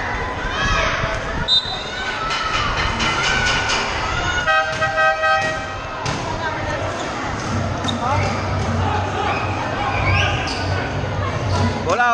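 A basketball being dribbled, several bounces in a row, over crowd chatter in a large covered court. A short horn blast sounds about four and a half seconds in.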